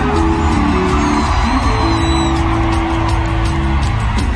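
Live rock band playing an instrumental passage of a Latin rock song, with a steady beat, a strong bass line and a long held note about halfway through. An arena crowd cheers and shouts over it, heard from among the audience.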